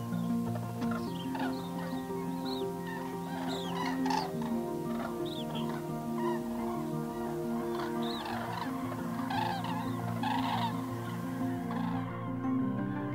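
A flock of common cranes calling, many short overlapping calls, thickest about a third of the way in and again near the end, over background music of held low tones.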